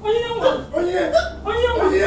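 Distressed human voices crying out, sobbing and calling with no clear words.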